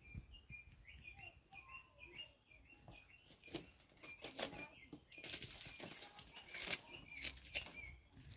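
A bird gives a faint, short, high chirp over and over, about three times a second. From about three and a half seconds in, banana leaves rustle and crackle as they are pulled and handled.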